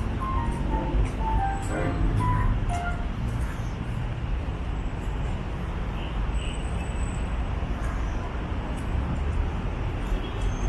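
Steady outdoor urban rumble of distant traffic. A short run of tinkling tune notes plays over it in the first three seconds, then fades out.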